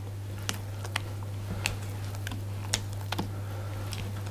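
Silicone spatula stirring batter in a glass mixing bowl, knocking against the glass in irregular light clicks, about six in four seconds, over a steady low hum.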